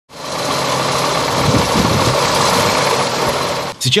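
Wheel loader's diesel engine running steadily; the sound cuts off just before the end.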